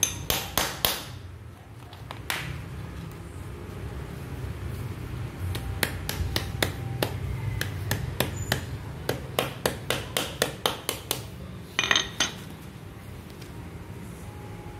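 Hammer striking a steel hand grommet setter, clamping a metal grommet into a tarp sheet over a wooden block. There are a few sharp blows at the start, then a run of quick strikes about three a second, and two harder ringing strikes near the end.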